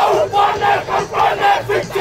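Māori haka performed by a group: many voices chanting and shouting in unison, short forceful syllables about four a second.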